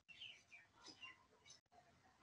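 Near silence with faint, brief bird chirps heard through a video-call microphone.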